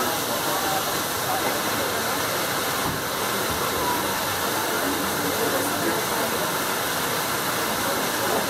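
A steady rushing hiss throughout, with faint indistinct voices of people nearby mixed in.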